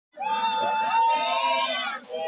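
A crowd of women's voices calling out together on long, high held notes, starting abruptly just after the beginning and breaking off near the end.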